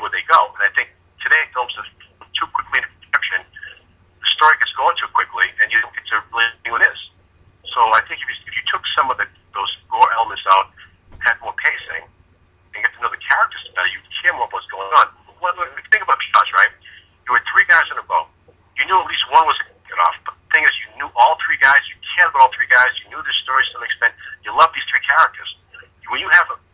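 Speech only: a voice talking over a telephone line, thin and narrow-sounding, with short pauses between phrases and a faint steady hum underneath.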